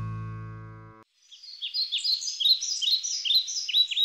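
A held closing music chord fades and stops about a second in. Then small birds sing in rapid, repeated high chirps, which carry on.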